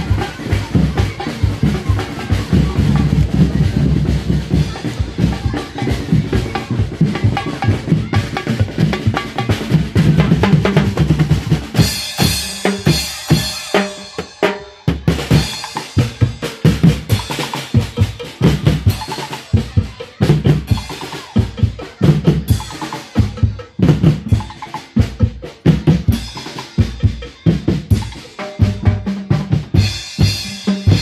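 A street percussion band of snare drums, large bass drums and cymbals plays a fast, driving beat. About twelve seconds in a cymbal crash rings out, and after that the drum strokes come through sharper and more clearly separated.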